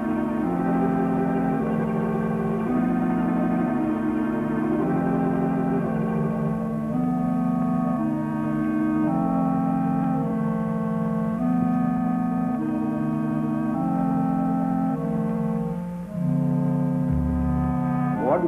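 Organ music: slow sustained chords that change about once a second, with a deep bass note entering near the end.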